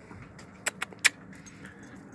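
A small dog moving down concrete steps, with three or four light metallic clicks close together about a second in, like collar tags clinking.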